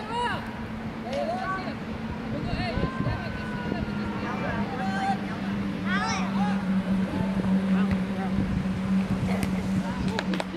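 Scattered distant voices and short calls from people around a field, over a steady low motor-like hum that grows louder about halfway through.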